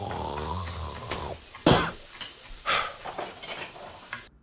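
Kitchen clatter of pots, pans and utensils: a held tone for about the first second, then a sharp loud clang about a second and a half in, followed by several lighter knocks.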